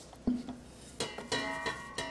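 Stainless steel tank knocking and scraping against the pump as it is turned by hand onto its threaded fitting. There is a dull knock early, then a few taps about a second in that set the tank ringing with a metallic tone.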